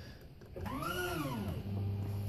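Power-Pole shallow-water anchor's hydraulic pump running as the ten-foot blades retract: a motor whine that rises and then falls in pitch, then settles into a steady low hum.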